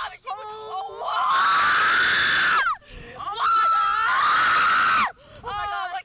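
Riders screaming on a Slingshot reverse-bungee ride: two long held screams, each lasting about a second and a half, with short shouts and laughter around them.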